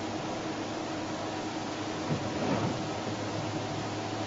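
Steady low hiss with a faint hum and no distinct events, swelling slightly about two seconds in.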